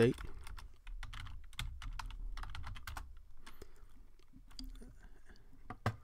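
Typing on a computer keyboard: a run of irregular key clicks, thickest in the first three seconds and sparser after, ending with a single sharper keystroke as the command is entered.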